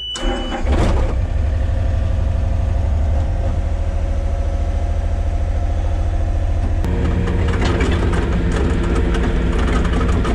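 An excavator's diesel engine cranks and starts inside the cab, cutting off a high steady beep half a second in, then settles into a loud, steady idle. About seven seconds in, a higher hum joins the engine sound.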